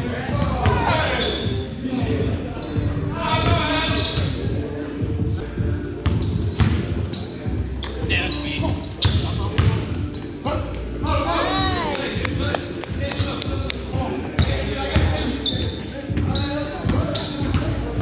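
Basketball game sounds in a reverberant gym: the ball bouncing on the hard floor in repeated thuds, sneakers squeaking in short high chirps, and players' indistinct voices calling out.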